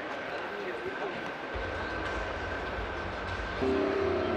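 Exhibition-hall ambience: indistinct crowd chatter over a steady high tone. A low bass beat comes in about a second and a half in, and sustained music notes join near the end.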